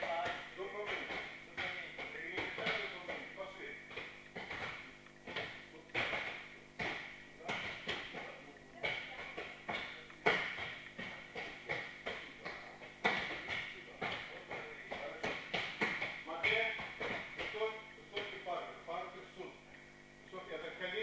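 Frequent short thuds and knocks of judo practice on the mats, mixed with indistinct voices.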